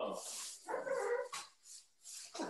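A dog making a few short barks and whines.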